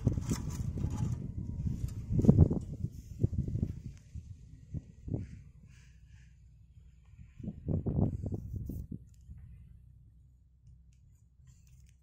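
Wind buffeting a phone's microphone in irregular gusts, strongest about two seconds in and again around eight seconds, dying down near the end. Near the start, faint rustling of dry grass being pushed into a flattened aluminium can.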